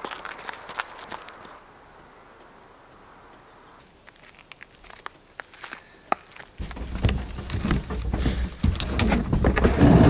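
Footsteps crunching on a gravel road shoulder, scattered at first and then coming closer. From about two-thirds of the way in, louder knocking and rumbling take over as the rider climbs back into the velomobile's shell.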